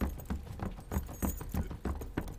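A group of soldiers in metal armour hurrying on foot: a quick, steady tread of about three to four steps a second, each step a low thud with the armour plates jangling.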